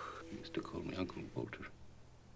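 A woman crying quietly, with soft breathy sobs and sniffles.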